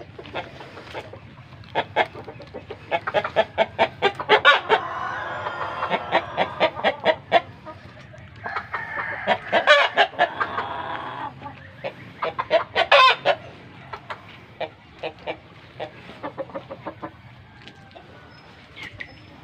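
Penned chickens clucking in quick irregular runs, with roosters crowing, one long call about five seconds in and another near the middle.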